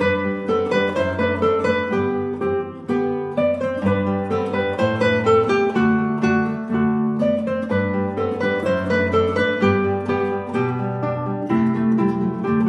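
A trio of nylon-string classical guitars playing an ensemble piece together: quick plucked melody notes over a held bass line.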